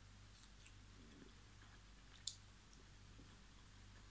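Near silence: a person chewing a mouthful of Leberkäse faintly, over a low steady hum, with a single short click a little past two seconds in.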